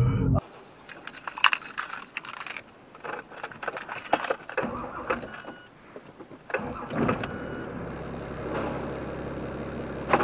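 Light clicking and jangling rattles for several seconds, like keys or loose items shaking in a car. From about seven seconds in, a steady low hum of a car takes over.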